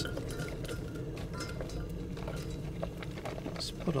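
A silicone spatula scrapes diced vegetables out of a glass container, and they drop into a stainless steel pot with oil in it, making many small clicks and scrapes.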